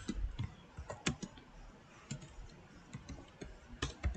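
Computer keyboard keystrokes: a dozen or so irregular key clicks as a short terminal command is typed, with a brief pause around the middle.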